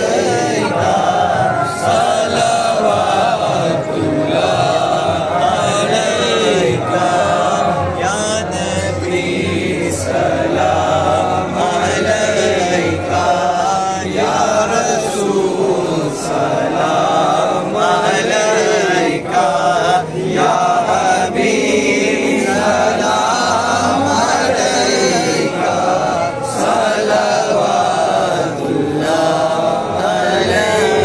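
A group of men chanting a Salam, the devotional salutation to the Prophet, together in one melody, steadily through the whole stretch.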